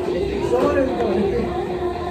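Indistinct chatter of several people talking in a busy room, with a steady low hum underneath.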